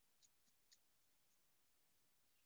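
Near silence: faint outdoor room tone with a few brief, faint high-pitched ticks or chirps in the first second.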